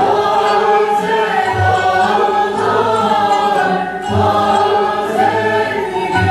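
Mixed choir of a classical Turkish music ensemble singing a şarkı in makam segah with the instruments, the voices coming in right at the start after an instrumental passage.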